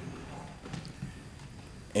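Quiet room noise with a few faint light knocks and rustles, as people settle back into their seats and handle their Bibles after standing for the scripture reading.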